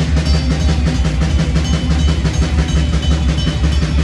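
Live metal band at full volume: distorted electric guitars and bass over fast, steady drumming with rapid drum hits and a heavy low end.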